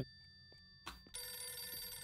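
Rotary desk telephone ringing in the film's soundtrack. It is quiet for the first second, then the ring starts again as a steady set of tones.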